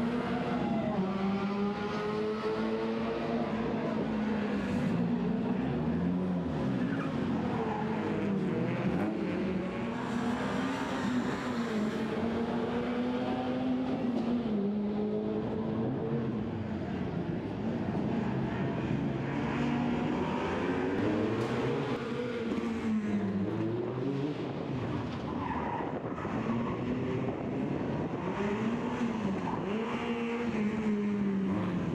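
Peugeot 106 rally car's engine revving hard, its pitch climbing and dropping again and again as the driver accelerates, lifts and shifts through the bends.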